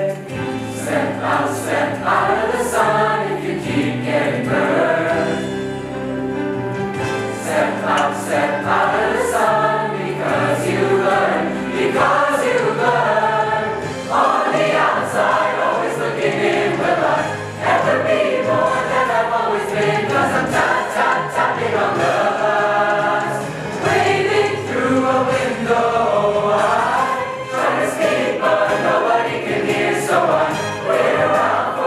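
A mixed choir of teenage boys and girls singing together.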